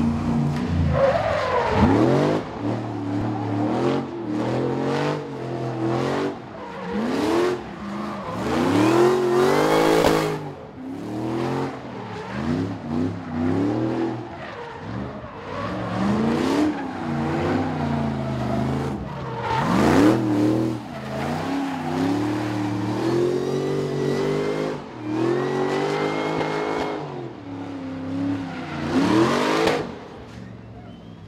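A drift car's engine revving hard, its pitch climbing and dropping over and over as the throttle is worked through a drift run. Under it runs the noise of the spinning, smoking rear tyres.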